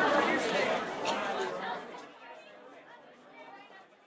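Indistinct chatter of several voices, fading out over the last two seconds.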